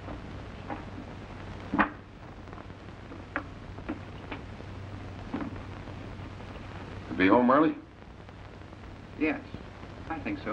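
Steady hiss and low hum of an early-1930s film soundtrack, with scattered soft clicks. A short spoken sound from a man cuts in about seven seconds in, and another brief one near the end.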